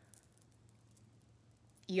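Quiet room tone with a few faint, light clicks in the first half second. A woman's voice starts near the end.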